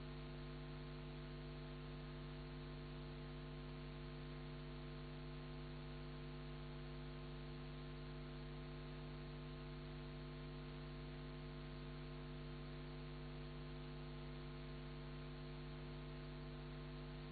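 Faint, steady mains hum with a light hiss from a record player's playback chain, the 45 spinning with no music coming off it. It does not change.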